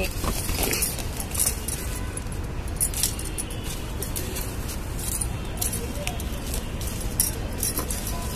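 Glass bangles jingling and clinking now and then on a working wrist, with a small tool scraping and loosening soil in a plant pot, over a steady low rumble.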